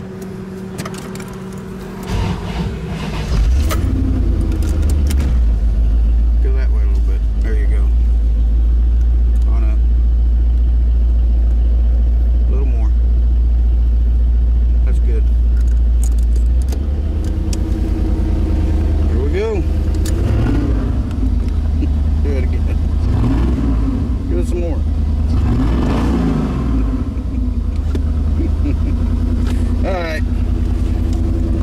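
1990 Corvette's V8 engine starting up about two seconds in after a stall, then running with a loud, steady low exhaust rumble whose note changes around halfway. It runs a little rough, which the owner puts down to water in the fuel from the car sitting too long.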